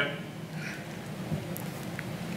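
Faint, steady room noise in a pause between speech: a soft even hiss over a low hum.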